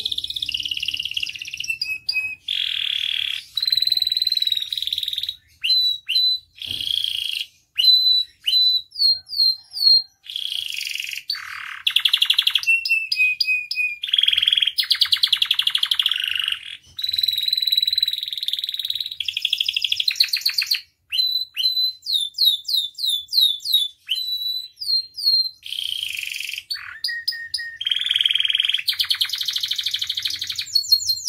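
Domestic canary singing a long, varied song: fast rolling trills and buzzy stretches alternate with runs of quick repeated sliding notes, with brief breaks between phrases.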